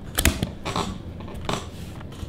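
Folding Polaroid SX-70 instant camera being pressed shut and moved on a table: a few light clicks and knocks of its metal and plastic body, clustered early with a couple more later.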